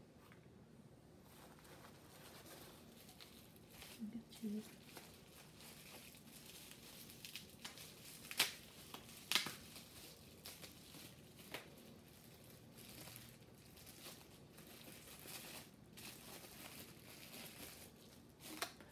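Faint rustling and crinkling of paper-shred packing filler in a cardboard box as hands dig through it, then the crackle of a small bubble-wrapped bottle being handled and unwrapped, with a few sharp crackles about eight and nine seconds in.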